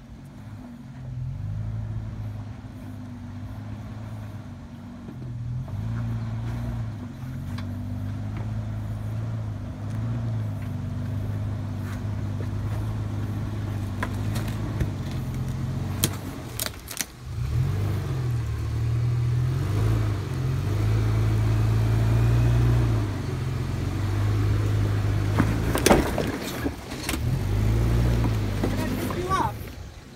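Lexus LX450's 4.5-litre inline-six engine running at low revs under load, its drone rising and falling with the throttle as the truck crawls over rocks, growing louder as it comes closer. A few sharp knocks about midway and near the end.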